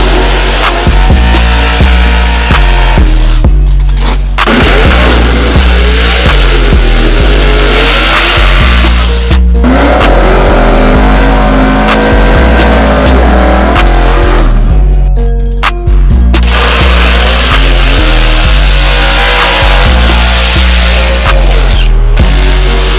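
Music with a heavy repeating bass beat mixed over drag cars' engines revving hard and tyres squealing in burnouts. The engine sound breaks off abruptly and changes a few times, at edits between clips.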